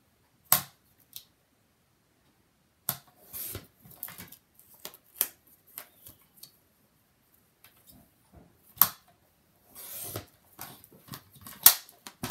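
Sliding-blade paper trimmer cutting a photo: scattered sharp clicks, the loudest about a second in and near 9 s, and a few short scraping strokes as the cutter head is run along its rail and the paper is shifted.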